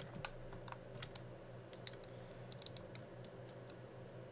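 Irregular clicking of a computer keyboard and mouse, with a quick run of clicks about two and a half seconds in, over a steady low electrical hum.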